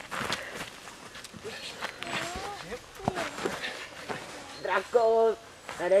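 Voices shouting and calling out, loudest about five seconds in, over feet scuffling on the dirt as two men haul on a rope.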